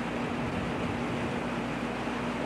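Steady hiss with a constant low hum underneath and no distinct event.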